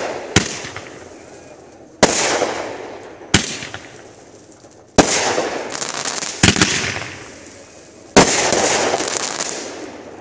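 Consumer aerial fireworks going off: about seven sharp bangs, roughly one every second and a half, the biggest trailing off in crackling that fades over a second or two.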